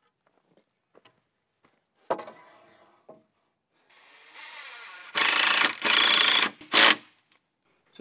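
Cordless drill driving screws into wooden boards: a knock about two seconds in, then the motor starting softly and two loud runs of about half a second each, with a short final burst.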